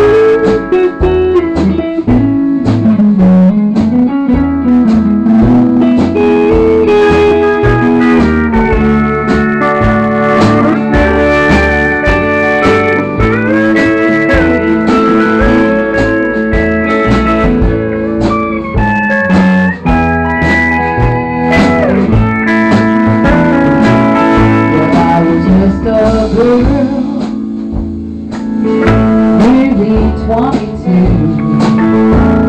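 Country band playing an instrumental passage: pedal steel guitar sliding between sustained notes over electric guitar, bass and a steady drum beat.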